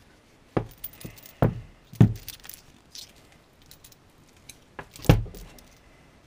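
Handling noise of a plastic inspection-camera handset and its cable on a wooden workbench: several separate knocks and clatters, the loudest about two seconds in and about five seconds in, with lighter clicks between.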